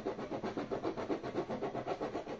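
Knife blade sawing back and forth through the wall of a plastic 5-litre jug, in rapid, even strokes several times a second. The knife seems blunt.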